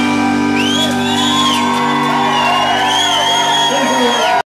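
Live band holding its final chord, with electric guitar, acoustic guitar and banjo ringing on together, while audience members whoop twice over it.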